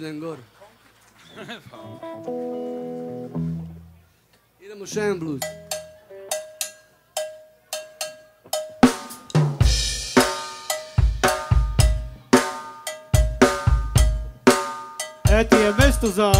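Rock band's drum kit playing live: sharp rim and snare strokes with a ringing tone, then kick drum and snare coming in hard about nine seconds in and keeping a steady beat. Before the drums, a few short vocal sounds and instrument notes.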